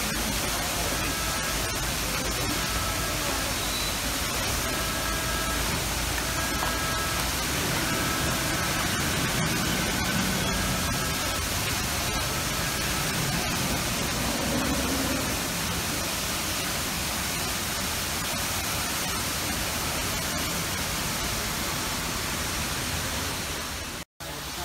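Steady, even hiss of ambient noise, with faint short pitched notes coming and going through the first half.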